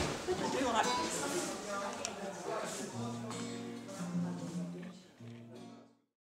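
Voices talking, then from about halfway a few held low notes on an acoustic guitar, changing pitch every second or so. The sound cuts off just before the end.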